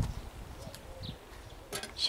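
Quiet garden sound: faint rustling and a few light clicks from hands working potting soil in a wooden planter box, with one short high bird chirp about a second in.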